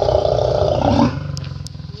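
Lion growling at close range: loud for about the first second, then dropping to a lower rumble.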